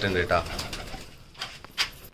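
Domestic pigeons cooing softly in a wire cage, with a few sharp clicks or taps near the end.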